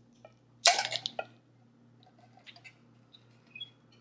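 Plastic measuring spoons on a ring clattering against each other and the plastic funnel: one short burst of several quick knocks under a second in, then a few light clicks.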